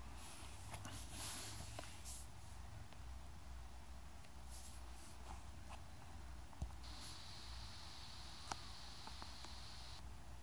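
Quiet room tone: a steady low hum and faint hiss with a few faint isolated clicks, and a faint high whine that comes in about seven seconds in.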